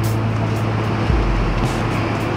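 Background music carried by a sustained low bass line that changes note about a second in, with light cymbal-like hits above it.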